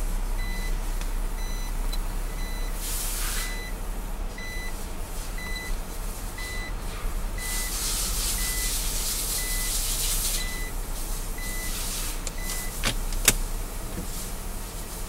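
Nissan Elgrand's in-cabin reverse warning beeper sounding with the gear in reverse: a short high beep repeating about twice a second, stopping shortly before the end. The idling 3.5-litre V6 makes a steady low hum beneath, with passing bursts of hiss and one sharp click near the end.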